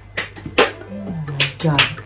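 A few sharp snips of hair-cutting scissors opened and closed in the air, with a low murmured voice in between.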